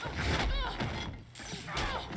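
Soundtrack of an animated fight scene: crashing impact effects and a short gliding tone about half a second in, over music.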